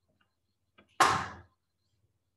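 A sudden loud puff of breath on the microphone, a whoosh that fades over about half a second.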